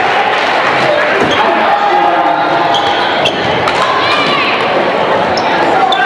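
Gym din during a basketball game: many voices from the crowd and the bench, with a basketball bouncing on the hardwood floor and sneakers squeaking, all echoing in the large hall.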